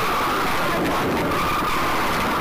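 Car tyres squealing in a long, steady skid over road noise.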